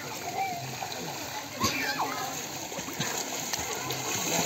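Pool water splashing and sloshing as people swim and play, with a sudden sharper splash about one and a half seconds in.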